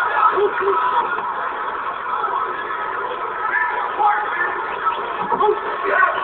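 Spectators' voices in a continuous din, with a man laughing about a second in.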